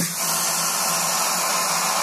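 Loud, steady white-noise hiss like television static, cutting in suddenly and holding level with no pitch or beat.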